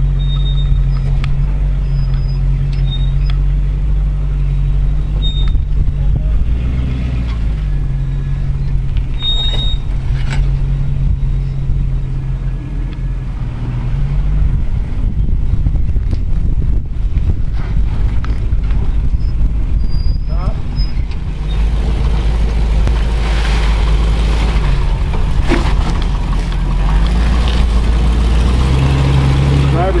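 Land Rover Discovery's V8 engine running at low revs as the truck crawls over boulders, a steady low drone that gets somewhat louder in the last third.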